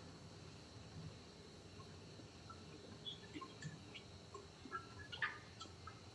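Near silence: faint room tone with a few faint, short high-pitched sounds in the second half.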